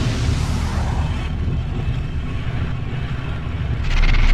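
A steady low rumble from an animated outro's sound effects, easing off slightly towards the end.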